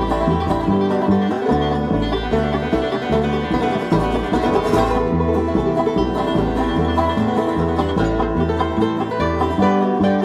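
Bluegrass band playing an instrumental break with no singing, a fast-picked banjo to the fore over a steady bass line that alternates between two low notes on the beat.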